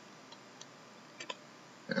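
A few faint, irregular clicks of trading cards being handled and shuffled between the fingers, over quiet room tone.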